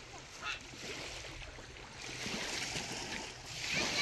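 Gentle waves washing on the shore, a steady hiss that grows louder a little after halfway.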